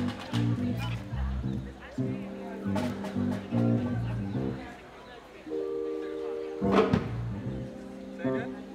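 Electric keyboard playing chords in a rhythmic, repeated pattern, settling on a held chord about five and a half seconds in, broken by a single sharp hit just before seven seconds.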